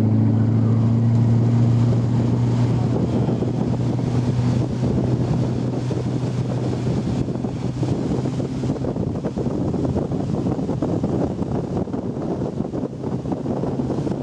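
A tow boat's motor running at steady throttle, pulling a water-skier, with a low steady hum over rushing water and wind buffeting the microphone.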